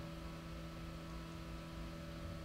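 A quiet, steady hum with faint room noise. No distinct clicks or knocks stand out.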